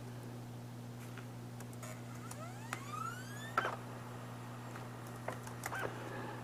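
Quiet room with a steady low hum and a few scattered computer keyboard key clicks as terminal commands are typed. A little past the middle, a faint tone rises in pitch for about a second and cuts off.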